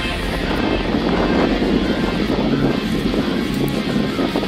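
A Fiat Seicento's small petrol engine running under load as the wrecked car drives up a tow truck's loading ramp, a steady rumble.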